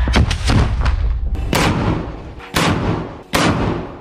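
Combat gunfire and blasts: a loud blast opens with a rolling low rumble and a few quick reports. Three more sharp shots follow, about a second apart.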